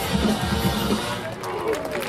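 Dance music with a singing voice and drums, played loudly over stage loudspeakers.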